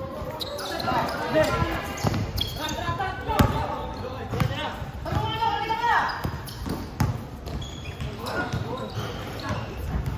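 A basketball bouncing on a hard court, several sharp thuds with the loudest about three and a half seconds in, under the shouting and chatter of players and onlookers.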